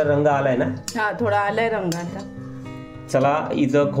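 A woman talking over soft background music, with a short music-only stretch of held notes about two seconds in.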